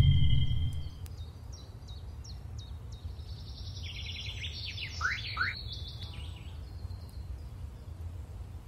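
Music fading out in the first second, then outdoor ambience: birds chirping and calling over a steady low rumble. The calls come as short chirps, busiest about four to six seconds in, with a couple of falling whistles about five seconds in.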